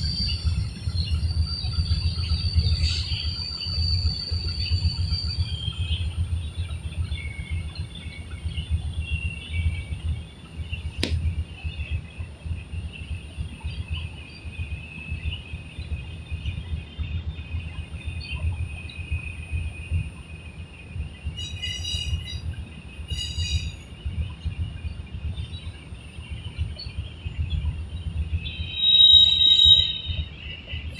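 Birds chirping now and then over a steady low rumble, with two quick runs of chirps past the middle and a short high-pitched call near the end.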